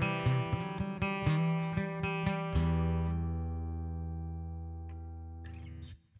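Acoustic guitar: a quick run of plucked notes for about two and a half seconds, then a final chord left to ring out and fade, stopped abruptly just before the end.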